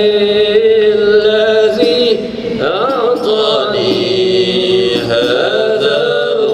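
A man chanting a qasidah, an Arabic devotional poem in praise of the Prophet Muhammad, drawing out long wavering notes. There is a swooping rise and fall in pitch about halfway through.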